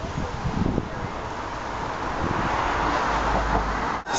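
Street traffic noise, growing louder over the last two seconds as a vehicle passes, with a low rumble near the end.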